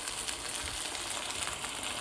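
Steady sizzling of diced beef frying in a hot clay pot as blended tomato and chile sauce is poured over it.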